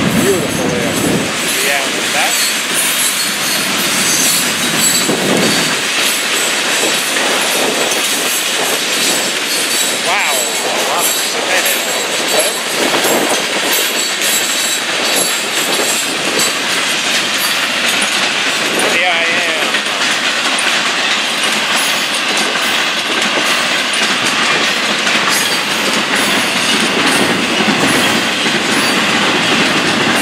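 A long Florida East Coast Railway freight train's cars rolling past at speed, first loaded open hoppers and then intermodal flatcars with highway trailers: a steady, loud clatter and rumble of wheels on the rails, with a few brief wavering wheel squeals. Strong wind on the microphone adds to the noise.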